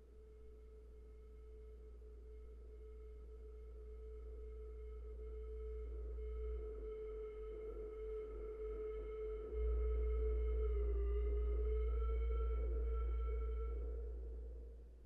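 Electronic sine tones over soft noise: a sustained mid-pitched tone with fainter higher overtones above a deep, steady low layer. The sound swells gradually, grows suddenly louder in the low layer about two-thirds of the way through, and the tone dips briefly in pitch before fading near the end.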